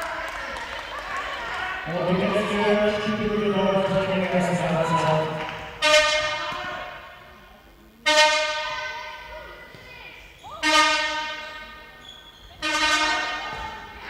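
A horn sounding four times in a large sports hall, each blast starting suddenly and fading over a second or two. Before the blasts comes a wavering, held voice-like sound.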